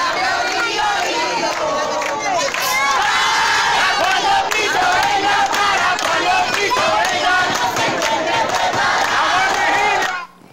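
A crowd singing a Christian hymn together, many voices at once, loud and steady.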